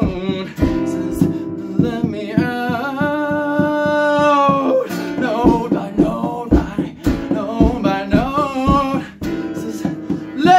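A man sings to his own strummed acoustic guitar. There is one long held note near the middle of the stretch.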